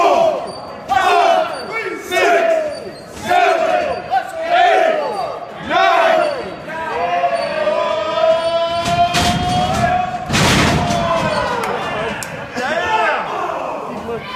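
Pro wrestlers trading hard open-hand chops in a ring, a sharp slap about once a second, each answered by shouts from the crowd. Later a long drawn-out yell builds, then a loud crash of bodies hitting the ring about ten seconds in.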